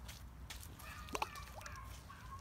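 Rocks thrown into a pond land in the water with a short splash about a second in.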